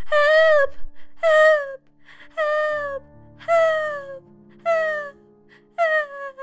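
A woman's voice crying out "Help!" over and over, about six drawn-out, high cries roughly a second apart, each sliding down in pitch, over low background music.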